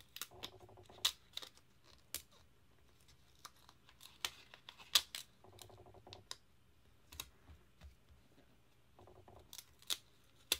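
A paper planner sticker being peeled from its backing sheet and pressed and smoothed onto the page by hand: scattered light clicks and taps, with a few short rustles of paper.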